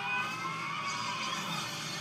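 Soundtrack of an anime fight scene playing in the background: a sustained, high, slightly wavering tone that fades out about one and a half seconds in.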